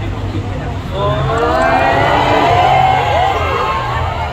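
A crowd of fans screaming, many high voices overlapping, swelling about a second in and easing off near the end, over a steady low hum.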